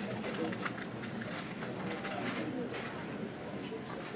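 Indistinct murmur of people talking quietly in a meeting room, with small scattered knocks and rustles.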